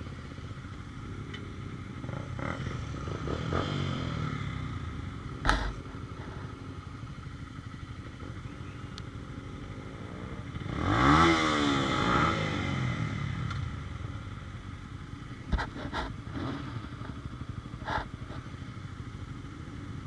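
Motorcycle engine running, with a louder surge of engine sound rising and then falling away about eleven seconds in. A few sharp clicks or knocks are heard, about five seconds in and later near the end.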